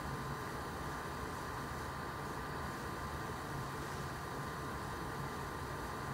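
Steady background noise: an even hiss with a faint steady high hum, and no distinct events.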